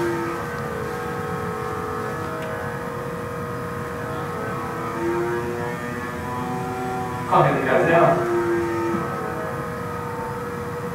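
Steady whirring hum of the small electric fan in a MindFlex EEG game that blows a foam ball into the air, with some of its tones shifting in pitch from time to time. It is heard as played back over room speakers. A voice speaks briefly about seven seconds in.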